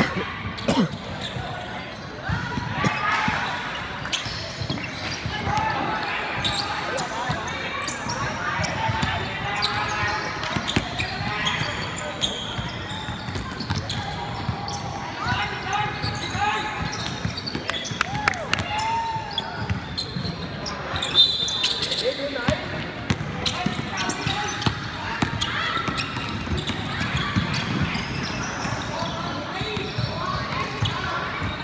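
Basketball game in a large indoor gym: the ball bouncing on the hardwood floor amid the chatter and shouts of players and spectators.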